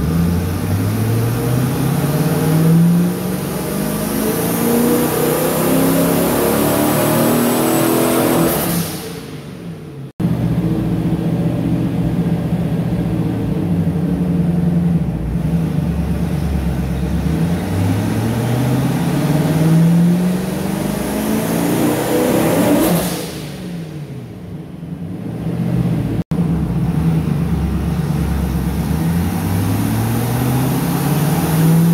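Turbocharged V8 of a TVR Chimaera under full load on a rolling road, its note climbing steadily up the rev range and then falling away as the throttle is lifted. This happens twice, separated by an abrupt cut: full-boost power runs during engine mapping.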